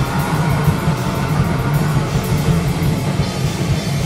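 A punk rock band playing live: guitar and drum kit together, loud and dense, over a steady beat of drum and cymbal strokes.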